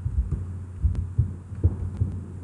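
Several soft, dull low thumps, irregularly spaced, over a steady low hum.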